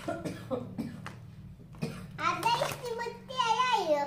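A young child's high voice calling out and babbling, loudest in the second half, with a cough.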